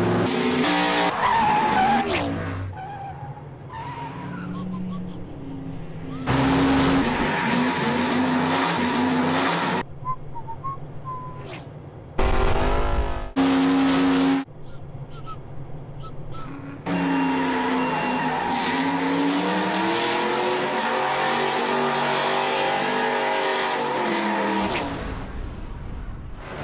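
A stock race car's engine and squealing tyres as it skids and turns, heard in several loud edited stretches that start and stop abruptly. The longest, from past the middle to near the end, is a sustained squeal whose pitch dips and then rises again.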